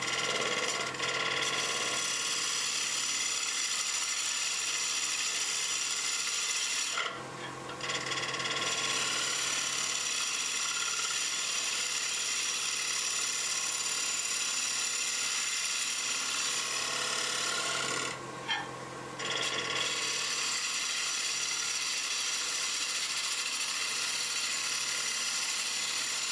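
Bowl gouge cutting a spinning monkeypod bowl on a wood lathe: a steady rushing cut with high steady tones running through it. The cut stops for about a second twice, about seven and about eighteen seconds in.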